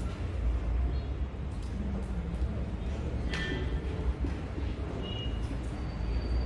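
Marker writing on a whiteboard, with a short squeak about three seconds in and a brief higher squeak near five seconds, over a steady low rumble of room noise.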